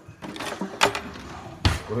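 Metal kitchen utensils clinking and knocking in an open drawer as it is searched, with a few sharp clicks and then a heavier thump near the end.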